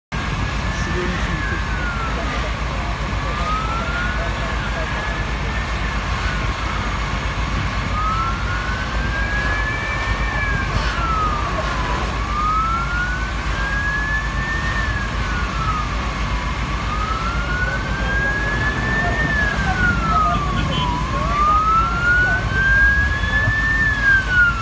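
An emergency siren wailing, each cycle a slow rise in pitch followed by a quicker fall, repeating about every four to five seconds over a steady low rumble.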